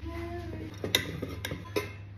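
A few sharp clinks and knocks of a metal insulated canister being handled as its lid is put on.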